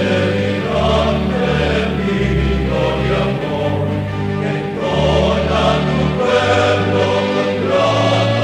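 Background music: a choir singing a slow devotional hymn over sustained chords, the bass notes changing about every second.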